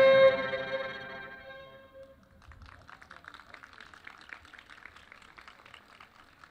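A string trio's final held chord on violin and cello stops just after the start and rings away over about two seconds. Faint, scattered clapping follows from about two and a half seconds in.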